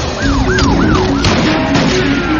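Police car siren yelping, a fast wail that rises and falls about three times a second, over engine and road noise with an action music score running underneath.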